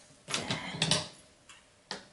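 Handling noise on a glass-topped table as a tape measure is set aside and scissors are picked up: about a second of rustling and light clicks, then one sharp click near the end.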